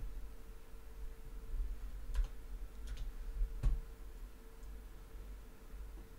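Three faint clicks of computer input, a little under a second apart around the middle, over a faint steady hum.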